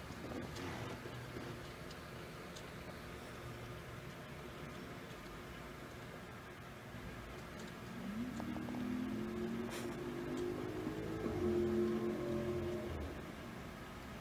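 Faint steady background noise, with a low humming drone that comes in about eight seconds in and dies away about five seconds later.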